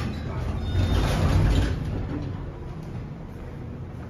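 Center-opening elevator doors sliding open as the car arrives, a rushing mechanical noise with a low rumble, loudest about a second in and then fading.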